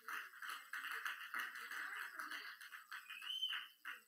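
Church congregation calling out and cheering in a continuous jumble of voices, with one high whoop that rises and falls near the end.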